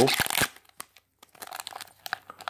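Wrapper of a Parkhurst hockey card pack crinkling and tearing as it is opened by hand, in short bursts. Some crackling comes just after the start and fainter crinkles come near the end.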